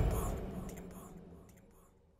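Echo tail of a man's voice saying "tiempo", the word repeating several times, each repeat fainter, over a low rumble that fades out with it; all of it dies away just before the end.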